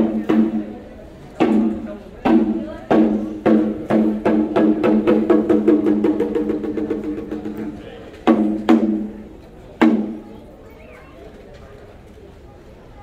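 Ceremonial drum struck with a ringing, pitched tone: spaced single beats, then a fast roll that speeds up and fades from about four to seven seconds, then three more beats.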